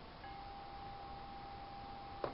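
A faint, steady, high single tone that starts a moment in and holds, over low hiss.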